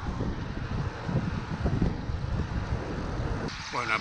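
Wind buffeting the microphone of a camera on a moving road bike: a low, uneven rumble with no engine or voice in it.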